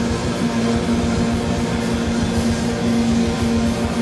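Live rock band playing an instrumental passage: electric guitars, bass, bowed violin and fast drumming, with one note held steadily underneath.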